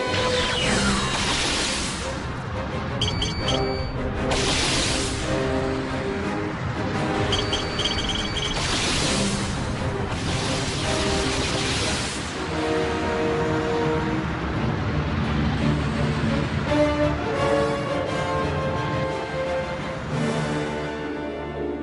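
Cartoon background music over missile-launch sound effects: three times, a short run of electronic beeps is followed by a rushing whoosh as the missiles take off, with a falling whistle near the start.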